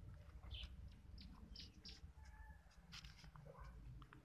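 Faint birds chirping: short, high calls scattered through, over a low rumble.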